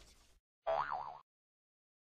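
The tail of heavy guitar music fades out, then comes a short cartoon 'boing' sound effect, about half a second long, its pitch wobbling up and down.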